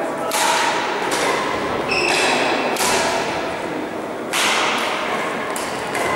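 Badminton rally: rackets strike the shuttlecock several times with sharp, echoing hits, and a brief high squeak about two seconds in, typical of court shoes on a sports-hall floor.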